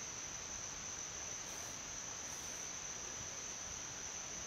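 Crickets trilling: one steady, unbroken high-pitched tone, faint, over a low background hiss.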